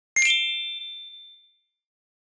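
A single bell-like ding sound effect, struck once and ringing out over about a second and a half.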